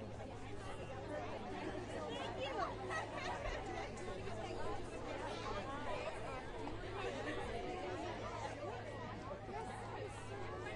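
Many people talking at once in close, overlapping conversation: a steady babble of crowd chatter.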